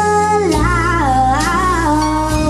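A girl singing solo into a handheld microphone over instrumental accompaniment: she holds a note, moves through a short run about halfway, and settles on another held note.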